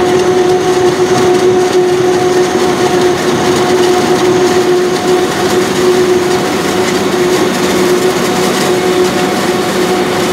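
Claas Jaguar 990 forage harvester, with its MAN V12 engine under load, chopping standing corn and blowing it into a trailer. It runs steadily with a constant droning tone, mixed with the engine of a John Deere tractor keeping pace alongside.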